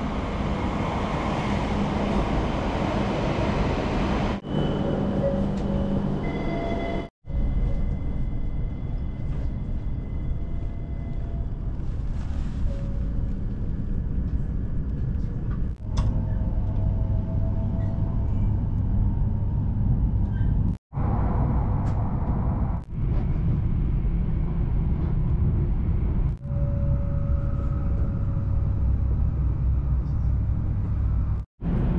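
E7-series Joetsu Shinkansen train sounds in short edited clips: a train running in alongside the platform, then the steady low rumble of running heard from inside the carriage as it departs. The clips are joined by several abrupt cuts.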